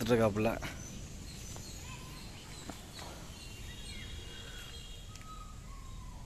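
Quiet outdoor background with a few faint, thin bird chirps and whistled notes.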